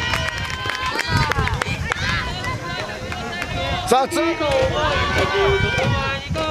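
Many young players' voices shouting and calling out over one another across a baseball field, with a sharp knock about four seconds in.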